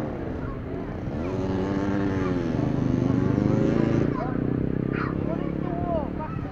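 An engine revving in the background, its pitch dipping and rising twice and loudest just before it drops back about four seconds in, with children's voices calling out near the end.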